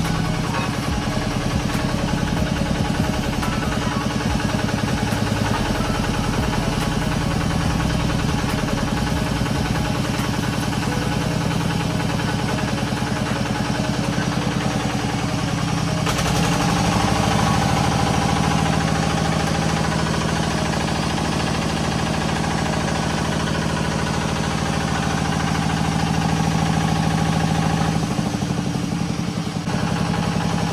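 Water-well drilling rig's engine and hydraulic drive running steadily under load. Its note changes and grows stronger about sixteen seconds in, then dips briefly near the end.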